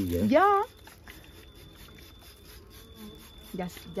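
Faint buzzing of honey bees at a hive entrance as water is misted onto them to drive them inside.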